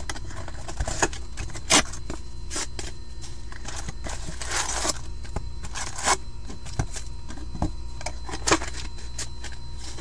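Upper Deck hockey card packs being pulled from their cardboard box and set down in a stack: a series of sharp clicks and taps, with a longer rustle of pack wrappers about four to five seconds in, over a steady background hum.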